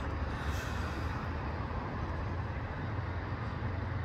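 Steady low rumble with a fainter hiss above it, even throughout, with no distinct events.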